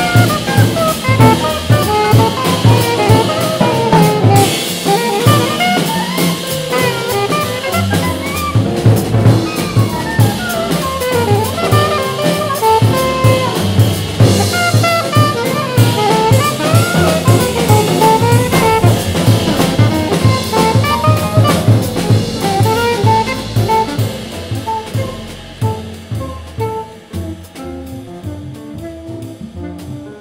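Live jazz quartet: alto saxophone improvising over drum kit with cymbals, double bass and piano. The drums and cymbals fall away over the last few seconds and the music gets quieter.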